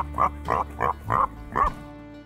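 Laughter in short, evenly spaced bursts, about three a second, over background music with a steady low drone.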